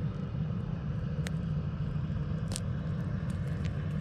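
Motor of a passing boat on the river, a steady low rumble, with a couple of light clicks about a second in and again about halfway.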